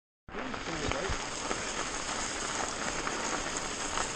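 29er mountain bike tyres rolling over a snow-covered forest track: a steady crackling hiss that starts abruptly just after the beginning.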